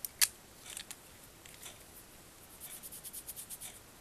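Handling of a glass dropper bottle of face oil: a sharp glass click about a quarter second in, then quick light rubbing of oily fingers on skin, about seven strokes a second, over the last second and a half.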